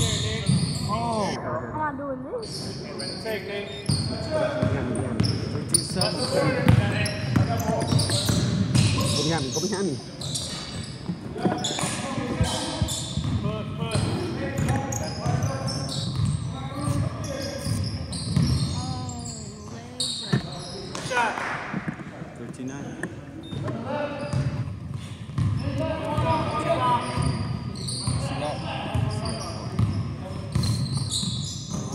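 Basketball game on a hardwood gym court: the ball bouncing as it is dribbled, sneakers squeaking, and players' voices calling out, echoing in the large hall.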